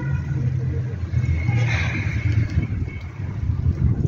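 Wind buffeting the microphone of a camera carried by a moving cyclist: an uneven low rumble, with a brief swell of hiss about two seconds in.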